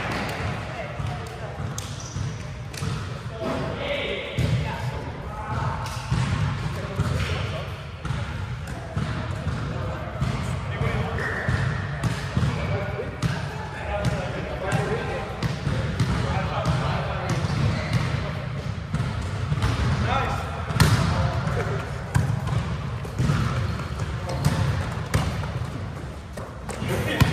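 A volleyball being hit and bouncing, heard as irregular sharp thuds throughout, the loudest about three-quarters of the way in. Players' voices call out indistinctly in a large indoor gym.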